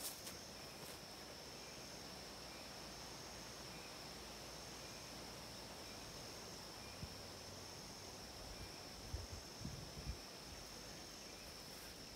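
A steady, high-pitched chorus of insects chirring without a break, with a few faint low thumps near the end.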